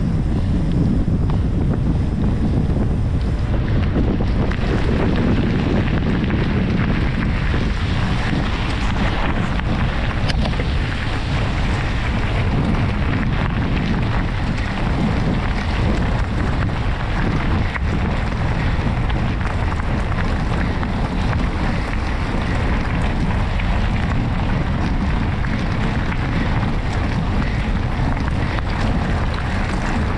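Steady wind rushing over the microphone of a camera on a moving mountain bike, over the rolling of its tyres. The sound turns grittier partway through as the surface changes from tarmac to a gravel track.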